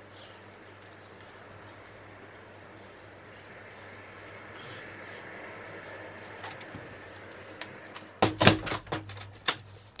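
Faint, steady outdoor background through open doors, then near the end about a second and a half of knocks and clatter as potted sunflowers are lifted and set down.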